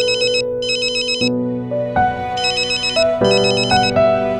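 A mobile phone ringing with a high, warbling electronic trill in double bursts, twice, over slow background music of held notes.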